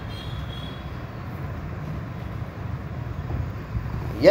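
Steady low rumble of background noise, with a faint high tone that fades out within the first second.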